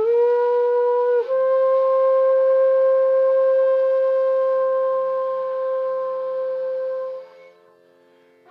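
Bamboo bansuri, an Indian transverse flute, playing a slow phrase. One note is held for about a second, then a small step up leads to a long sustained note of about six seconds, which fades out shortly before the end.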